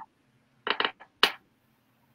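A few short, sharp clicks of small hard objects knocking: two quick ones a little over half a second in, a faint one at about one second, and a sharper one just after.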